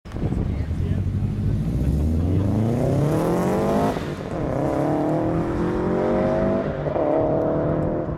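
Subaru Forester's flat-four engine accelerating hard: the revs climb, drop at a gear change about four seconds in, climb again and drop at a second change nearly three seconds later.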